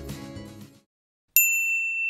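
Closing background music fading out, then after a brief silence a single bright ding, a bell-like chime struck once and left ringing: a logo sound.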